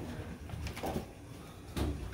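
A few soft knocks and a thump near the end as wet laundry is lifted out of a top-loading washer and put into a front-loading dryer.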